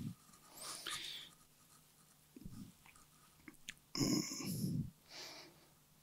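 A man's short breaths and effort noises, the loudest one about four seconds in, with faint rustling of cloth as he pulls on a hat and ties an apron behind his back.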